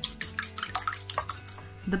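A fork whisking a raw egg in a small ceramic bowl: quick, even taps of the fork against the bowl, about six a second, with the egg sloshing. The whisking stops near the end.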